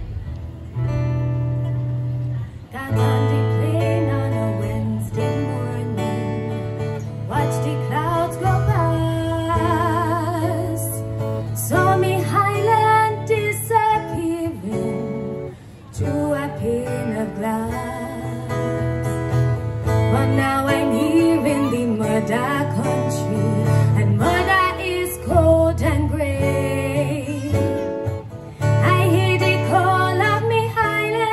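A woman singing a song from a stage musical with a live band, guitar prominent over a steady bass line. A short instrumental opening comes first, and the voice enters about three seconds in; her long held notes waver with vibrato.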